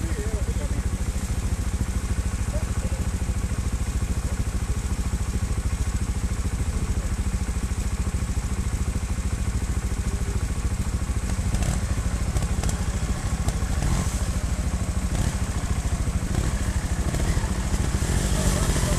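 Trials motorcycle engine idling steadily, a fast even low putter with no revving.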